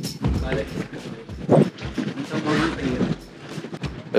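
Indistinct chatter of several people talking, with background music underneath.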